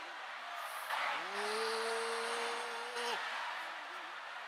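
A person's voice holding one drawn-out note for about two seconds, sliding up at the start and breaking off near the end, with short fragments of speech around it.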